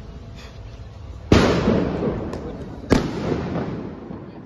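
Two firecracker bangs about a second and a half apart, each sharp and loud, trailing off over about a second.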